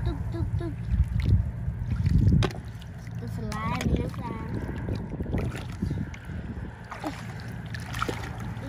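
Muddy water sloshing and splashing as someone wades and gropes through shallow rice-field mud by hand, over a steady low rumble that surges louder between about one and two and a half seconds in.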